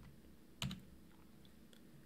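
One keystroke on a computer keyboard about half a second in, followed by a couple of faint key taps, over quiet room tone.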